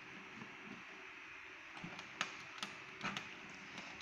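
Banana-plug patch cords being pushed into the sockets of an electronics trainer board, giving a few short sharp clicks between about two and three seconds in, over a faint steady hiss.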